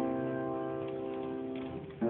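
Grand piano: a chord held with the sustain and slowly dying away, getting quieter until the next notes are struck at the very end.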